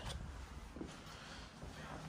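A quiet pause: faint room tone with light rustling of movement and no clear distinct sound.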